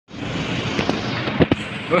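Steady outdoor street noise with several sharp pops or clicks, the loudest pair just before the end, followed by a brief sighing voice.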